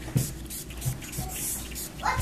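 Handheld trigger spray bottle squirting several short bursts of mist onto the floor.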